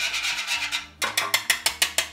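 A whisk beating an egg in a baking tray. First come rapid scraping strokes against the tray; after a brief pause about a second in, quick clicks of the whisk on the tray follow at about six or seven a second.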